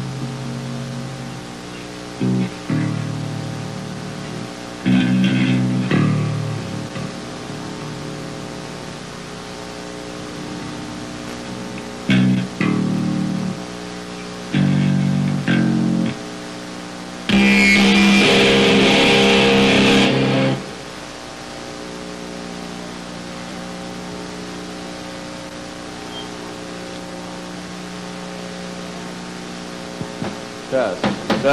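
Electric guitar and bass checked through the amps before the set: short bursts of low, distorted notes and chords with pauses between, then a louder chord about seventeen seconds in that rings for about three seconds, all over a steady amp hum.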